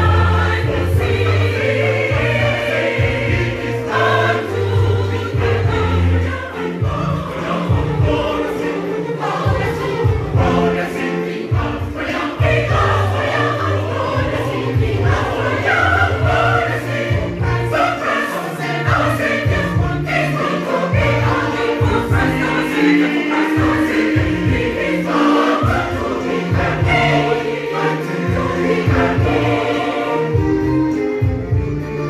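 Mixed church choir singing a gospel song live, with a steady, rhythmic low bass line underneath.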